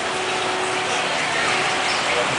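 Town street ambience: a steady wash of traffic and people in the background, with a faint steady hum running through it and a car approaching near the end.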